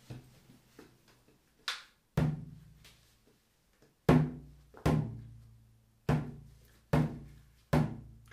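Calfskin bodhran (Albert Alfonso) struck with a blackwood tipper in six single, unevenly spaced beats, each ringing with a low drum tone. A light click comes just before the first beat.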